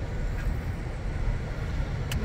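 Car cabin noise while driving slowly: a steady low rumble of engine and tyres heard from inside the car.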